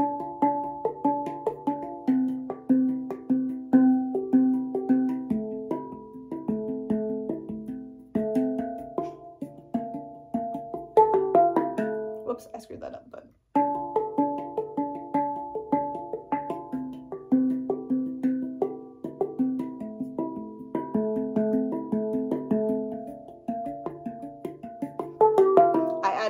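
Handpan played by hand: a repeating groove of quick finger strikes on its tone fields, each note ringing on. The playing stops briefly about halfway through, then the same pattern starts again.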